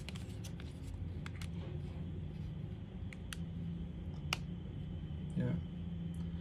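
A few small, sharp plastic clicks and taps as a mini power bank's built-in USB-C plug is worked into the charging port of a SMOK pod vape device, the sharpest click about four seconds in.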